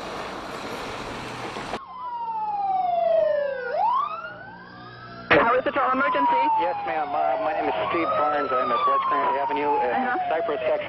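Siren wailing in a dull, old news recording, its pitch gliding down and sweeping back up, after a short stretch of steady outdoor noise. About halfway through a sharp click is followed by another falling siren wail with voices talking under it.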